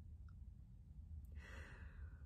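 Near silence with a low room hum, and a faint breath out, a soft sigh, about one and a half seconds in.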